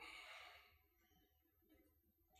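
Near silence: room tone, with one faint breath at the microphone in the first half second.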